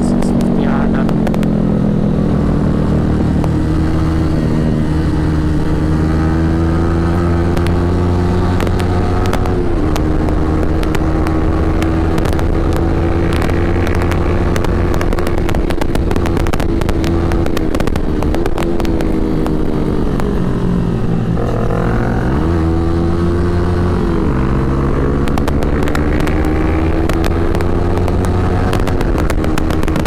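Yamaha R15 V3's 155 cc single-cylinder engine running at steady cruising revs, with wind rushing over the microphone. Past the middle the revs fall as the bike slows, then climb again in steps through a couple of upshifts.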